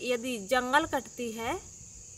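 A steady, high-pitched chorus of crickets behind a woman speaking Hindi; her words stop about one and a half seconds in, and the crickets carry on alone.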